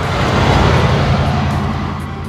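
Car engine sound effect that swells up and fades away like a vehicle driving past, with a low pulsing rumble, over soft background music.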